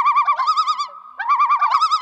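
A loud, high warbling bird-like trill, wobbling in pitch about ten times a second, in two phrases with a short break about a second in.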